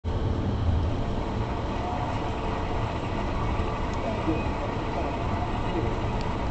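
Steady road and engine rumble inside a moving car's cabin, with a faint voice in the background from about two seconds in.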